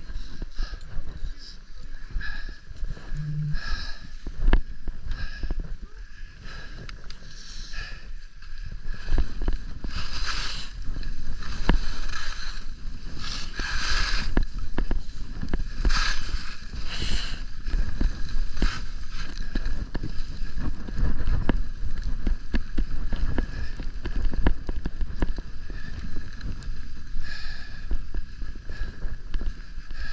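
Skis running and scraping over groomed snow, with wind rumbling on the microphone; several louder hissing scrapes come in the middle stretch as the skier turns.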